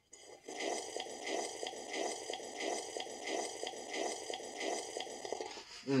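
Wet slurping and swallowing of milk drunk from a mug, going on without a break and pulsing evenly about three to four times a second, then stopping just before a satisfied "mmm".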